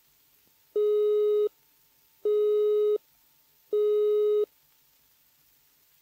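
Early GPO automatic-exchange engaged tone played from a restored 1928 78 rpm record: a high-pitched note interrupted at regular intervals, sounding three times, each about three-quarters of a second on and three-quarters off. It signals that the number dialled, or some of the exchange machinery on the way to it, is engaged.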